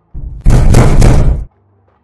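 Loud banging on the party bus door, a sound effect lasting about a second after a softer lead-in, then stopping abruptly.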